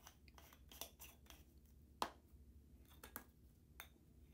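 Faint clicks and small scrapes of plastic screw-top jars of embossing powder being handled and their lids twisted on, with one sharper click about two seconds in.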